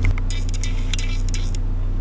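Steady low hum of a car running, heard from inside the cabin, with a few faint clicks.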